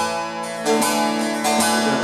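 Saz (bağlama) playing a short instrumental phrase of a Turkish aşık folk song, plucked notes over a sustained low tone.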